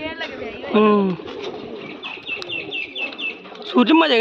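Domestic pigeons cooing around a rooftop loft, with one short loud falling call about a second in and a quick run of high chirps in the second half.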